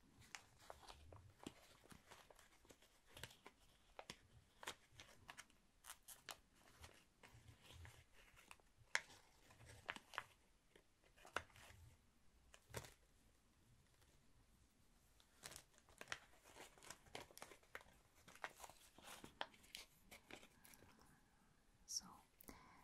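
Quiet, scattered crinkling of a small plastic bag and soft rustles as a cotton candle wick is handled and pulled out of it.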